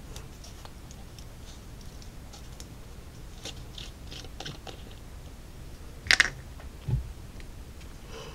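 Small handling noises over low room hum: faint scattered clicks and taps, a sharper click about six seconds in and a soft thump just after it.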